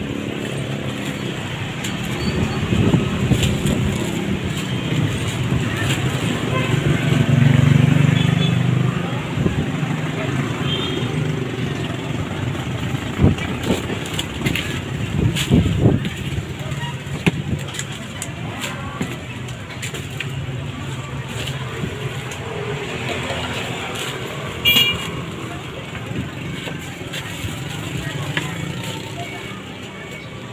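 A motor vehicle engine running nearby, its low rumble loudest about seven to nine seconds in, with crinkling of a plastic bag being handled and scattered clicks, over faint voices.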